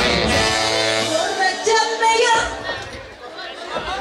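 Live band music with singing and guitar, coming to an end on held notes that die away about two and a half to three seconds in.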